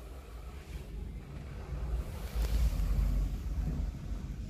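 Lift Service S.A. passenger lift heard from inside the car as it travels upward: a low rumble that builds and is loudest two to three seconds in.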